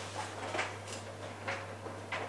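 A loaded fabric backpack rustling as it is lifted and handled, a few brief soft rustles and scrapes over a steady low hum.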